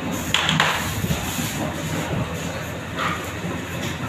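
Steady mechanical noise of bakery machinery running. A short scraping clatter comes about half a second in, and a fainter one at about three seconds.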